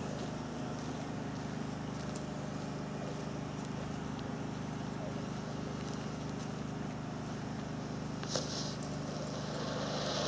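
A steady low motor hum runs throughout, with a sharp click and a brief high hiss about eight seconds in. Near the end a fireworks spark fountain starts hissing as it is lit.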